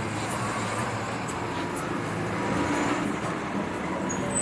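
Street traffic noise: the steady hum and wash of passing vehicles.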